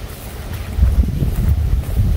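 Wind buffeting the microphone: a loud, uneven low rumble that swells about a second in.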